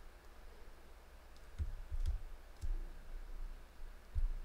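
A few faint clicks of a computer mouse with soft low knocks on the desk, clustered between about one and a half and three seconds in.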